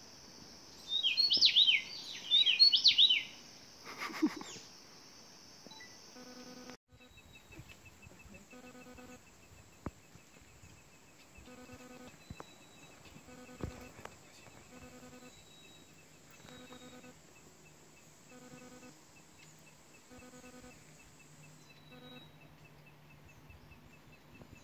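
A songbird in tropical montane forest gives two loud bursts of quick, rapidly rising and falling notes, about a second in and again about two and a half seconds in, over a steady high insect drone. After a sudden cut, a faint low sound repeats about every second and a half against quiet forest background.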